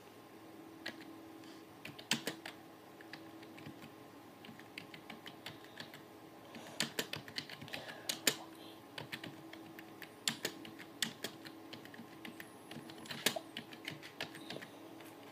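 Typing on a computer keyboard: irregular runs of key clicks with short pauses between them, over a faint steady hum.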